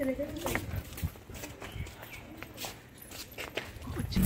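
Inside a car moving slowly: a low, uneven rumble with scattered light clicks and knocks.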